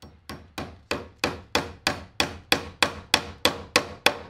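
Hammer tapping a cable staple into a wooden stud to hold NM (Romex) cable: a quick, even run of about three taps a second, growing louder as they go.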